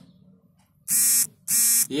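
Two short buzzes about half a second long each, a steady harsh tone repeated with a brief gap between them.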